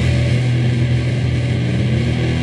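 Heavily distorted electric guitars and bass sustaining one low chord in a steady drone, with no clear drum beat.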